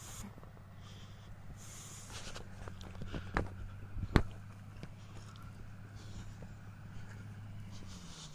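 Distant 4WD engine running at a steady low pitch as the vehicle comes back down a steep sand hill. Two sharp knocks come about three and four seconds in, the second the loudest.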